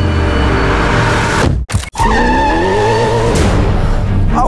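A car engine runs with a low rumble as the car pulls away. After a brief break, tyres squeal with a steady high whine for about a second and a half.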